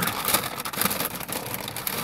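Paper takeaway bag rustling and crinkling as hands rummage inside it and draw out a cardboard burger box.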